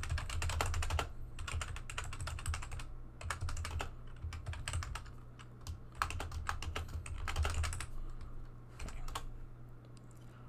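Typing on a computer keyboard: runs of quick keystrokes in several bursts with short pauses, as a line of code is entered. The typing stops about a second before the end.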